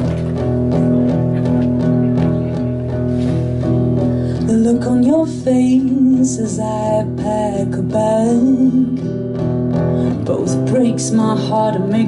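Acoustic guitar strummed in a steady song intro, joined about four and a half seconds in by a woman singing a melody over it.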